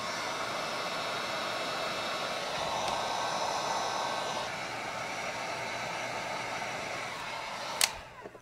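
Heat gun blowing steadily while shrinking blue heat-shrink crimp terminals on wiring, cutting off with a click near the end.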